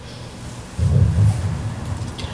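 A low rumble that starts suddenly about a second in, over a steady low electrical hum.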